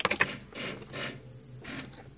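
Plastic wiring-harness connectors and cable loom clicking and rattling as they are handled, with a sharp click right at the start and a few softer rattles after it.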